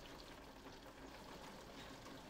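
Faint, steady rain, heard as a soft even hiss with light ticks.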